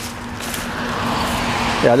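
A car driving past on the road, its tyre and engine noise swelling over about two seconds, with a voice saying "yeah" near the end.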